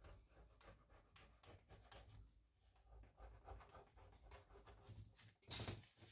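Faint rubbing and scraping of fingers pressing masking tape and a thin strip against a wooden model ship hull, with one louder, brief rustle near the end.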